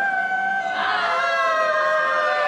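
Women's voices calling out a long, drawn-out, high-pitched excited greeting, held on one note, with a second voice joining in about a second in.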